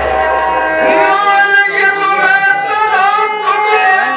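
A man singing a drawn-out, dramatic nautanki verse over steady held harmonium notes. A drum stroke dies away in the first second before his voice comes in.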